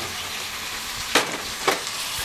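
Steady sizzling hiss of steaks frying in butter and olive oil in a pan, with two sharp knocks a little over a second in and about half a second apart as the oven is opened.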